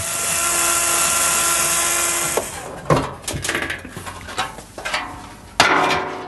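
Cordless drill-driver with a Torx bit running steadily for about two and a half seconds as it undoes the dryer's back-panel screws. Clicks and knocks of screws and the metal panel being handled follow, with a brief loud noise near the end.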